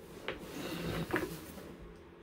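Quiet handling noise of a poly rope and a pair of scissors being moved in the hands, a soft rustle with two faint clicks.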